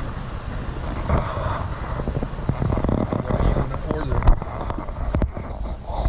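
Low steady rumble of a car running at low speed, with faint muffled voices and a sharp knock just after four seconds in, plus a few lighter clicks.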